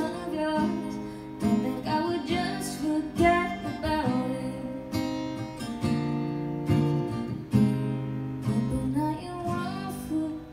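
Acoustic guitar played live, strummed chords in a steady rhythm.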